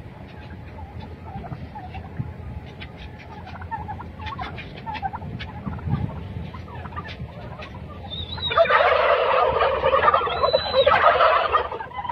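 A flock of domestic turkeys in a shed: faint scattered calls and clicks, then a loud chorus of gobbling from several birds together, starting about eight and a half seconds in and lasting about three seconds.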